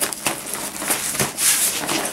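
Stiff 1000D Cordura nylon rustling and scraping in bursts as a bag's flap is pushed and tucked into place by hand.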